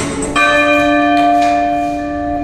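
A bell chime rings once, struck about a third of a second in, and holds with a slow fade as the music stops.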